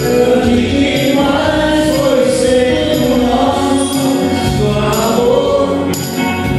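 Live band music: men's voices singing together over electric guitar accompaniment, with a steady bass underneath.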